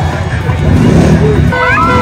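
Engines of three-wheeled Can-Am Spyder roadsters riding past in a group, rumbling loudest about a second in. Near the end, music with a gliding melody starts over them.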